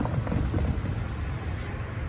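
Low, steady vehicle rumble with wind noise on the microphone.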